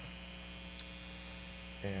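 Steady electrical mains hum in the recording, with a single brief click about 0.8 s in; a man's voice starts just before the end.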